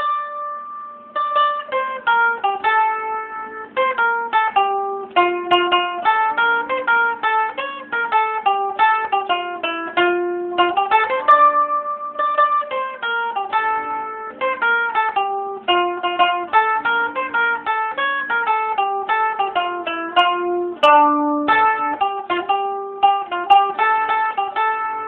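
Solo bowl-back mandolin picked with a plectrum, playing a quick Albanian folk melody of many short plucked notes, with a held note tremolo-picked about halfway through.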